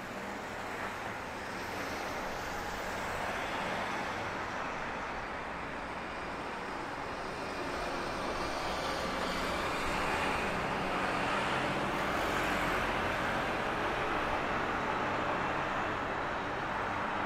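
Road traffic noise from cars passing on a multi-lane city street, a steady rush of tyres and engines that swells slowly and is loudest a little past the middle.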